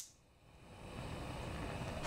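A steady rushing noise fades in about half a second in, after a moment of silence, and holds evenly.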